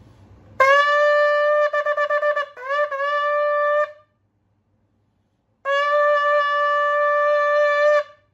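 A 12-inch Jericho ram's-horn shofar blown: a long blast on one steady pitch breaks into a quick run of short staccato notes, scoops up and holds again, and after a pause of under two seconds a second long, steady blast sounds. Very loud and vibrant, with a single clear tone rather than a double tone.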